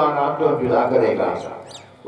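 A man's voice reciting a prayer into a microphone, tailing off in a pause, then a brief faint high-pitched squeak near the end.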